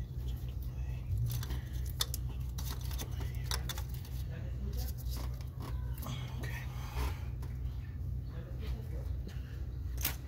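Hand ratchet with a long socket extension clicking irregularly, with light metal clinks, as valve cover bolts are worked loose. A steady low hum runs underneath.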